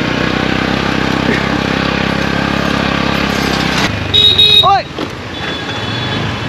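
Motor scooter engine running at close range in street traffic, with a steady hum. About four seconds in, a short, louder pitched sound cuts through.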